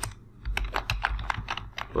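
Computer keyboard being typed: a quick run of about ten keystrokes, starting about half a second in.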